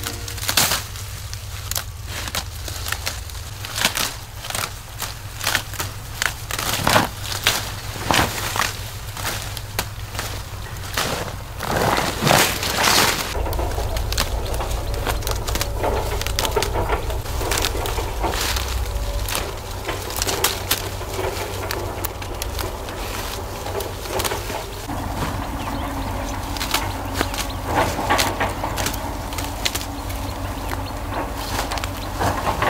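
Fresh tea shoots being snapped off the bushes by hand, with the leaves rustling: many short, crisp snaps at irregular intervals. A low rumble runs underneath and grows louder about halfway through.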